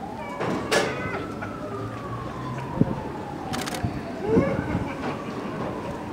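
A siren wailing slowly, its pitch rising for about a second and a half and then falling for about three seconds before it climbs again. A few sharp knocks sound over it, the loudest just under a second in.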